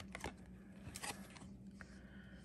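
Football trading cards being slid against one another and flipped over in the hands: faint, crisp flicks and rustles of coated card stock at irregular moments.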